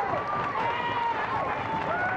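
Studio audience clapping and cheering, with several voices holding long, high whoops over the applause.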